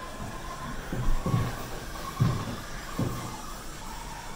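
Four dull thumps and knocks as an adult climbs into a fibreglass school-bus kiddie ride, feet landing in its footwell and body bumping against the shell, with a tight squeeze to get in.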